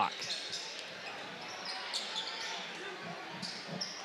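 Basketball dribbled on a hardwood gym floor during live play: a few scattered bounces over the hum of the gym.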